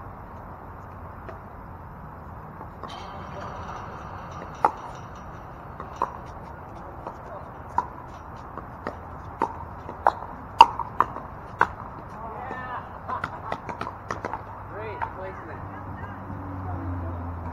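A pickleball rally: the hollow plastic ball is struck by paddles in sharp pops, about a second apart at first and then quicker, in a flurry about ten seconds in, until the rally ends. Faint voices follow near the end.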